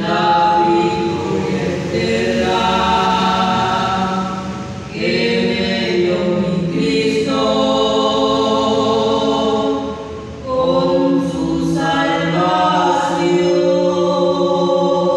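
A group of young people singing a hymn together in long, held phrases, with short breaks for breath about five and ten seconds in.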